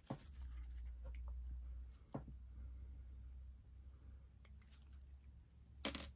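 Quiet room with a steady low hum and a few soft, short clicks of small handling, the sharpest one near the end.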